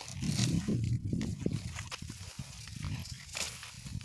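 Low, uneven rumble of wind and handling noise on a phone's microphone, with faint rustling of rice stalks brushing past.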